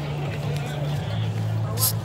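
A steady low hum, like an idling motor, under faint murmuring voices, with a brief hiss near the end.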